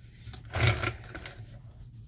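A small plastic die-cutting machine and its cutting plates handled on a cutting mat. A short rubbing scrape comes about half a second in, then faint handling rustle.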